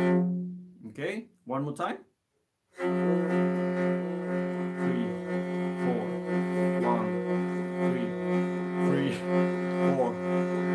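Morin khuur (Mongolian horse-head fiddle) bowed slowly on both strings: a steady low drone with a second string's notes changing above it in a repeating rhythm. The playing fades out about half a second in, with a short broken sound and then a moment of complete silence, and resumes just before three seconds.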